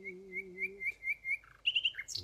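Common nightingale singing: a run of about six clear, repeated whistled notes, about four a second, then a quicker, higher trill near the end. A man's held sung note fades out about a second in.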